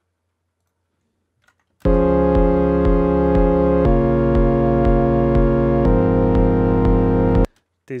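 Serum software synth pad playing a chord progression: three sustained chords of about two seconds each, with a regular pulse running through them, starting about two seconds in. The voicing has the third notes moved an octave below, and it is judged as definitely not working.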